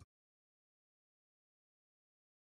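Dead silence: the closing music cuts off abruptly right at the start, and nothing follows.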